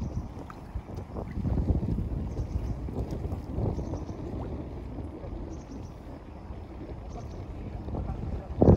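Wind buffeting the microphone in uneven low gusts, with small waves lapping at a reedy lakeshore.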